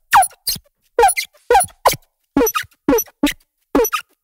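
A drum loop played through the Fusion spectral resynthesis plugin with its colour control turned up. Each hit comes out as a short pitched tone sliding quickly downward, in an uneven drum rhythm with silence between the hits.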